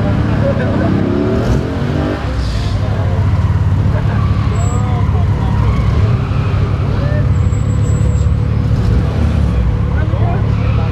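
Car engines idling with a steady low rumble as two cars roll up side by side to the start line of a street drag race, with people's voices over it.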